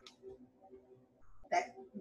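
Faint soft background music of steady held tones, with a short breath sound about one and a half seconds in.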